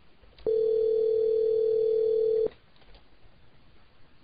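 Telephone ringback tone from a Cisco IP Communicator softphone: one steady two-second tone starting about half a second in, the sign that the called extension is ringing and has not answered.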